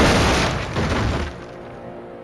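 One loud shotgun blast as a film sound effect, blowing out a wooden wall, its boom dying away over about a second and a half.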